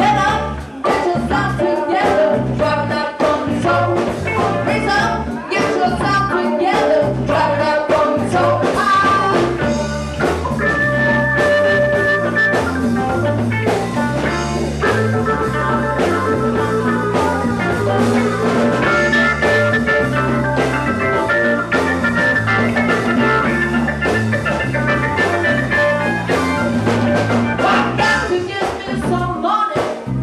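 Live soul-funk band playing a steady groove on bass guitar, keyboard, electric guitar, drums and congas, with a held sustained line over the rhythm through the middle stretch.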